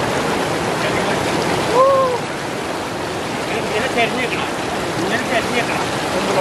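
River water rushing and churning over rocks around people sitting in the current, a steady splashing roar. A short call rises and falls about two seconds in, and faint voices come and go later.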